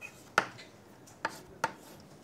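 Chalk tapping and scratching against a blackboard while letters are written: four short, sharp taps, the loudest about half a second in.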